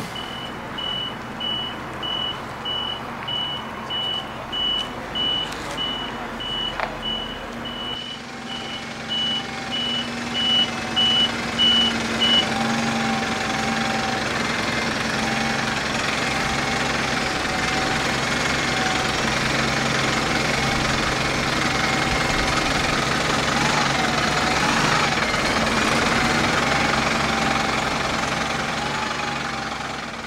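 Iveco Crossway LE city bus backing up: its reversing alarm gives a steady run of high, evenly spaced beeps that stops about twelve seconds in. The diesel engine runs throughout and grows louder after the beeping ends.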